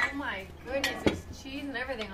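Metal serving spoon clinking against a ceramic platter of scrambled eggs as it is dished out: a few sharp clinks, two of them close together near the middle, with voices talking at the table.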